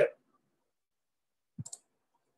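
Near silence, then a brief cluster of two or three small clicks near the end.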